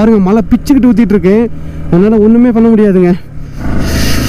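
A man's voice over the steady low drone of a Yamaha R15 motorcycle riding on a wet road, with wind on the microphone. A louder rush of wind noise comes in about three and a half seconds in.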